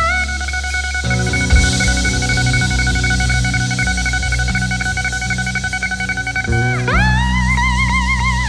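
Sacred steel lap steel guitar holding one long high note over electric guitar, bass and drums, then sliding up into a new note with vibrato near the end. A cymbal crash comes about one and a half seconds in.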